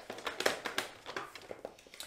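Black card stock being handled on a plastic paper trimmer with a scoring blade: a run of light, irregular clicks and rustles, the loudest about half a second in.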